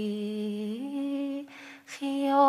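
A woman's voice holding one long sung note that steps up in pitch about three-quarters of a second in, then a short breath in near the end.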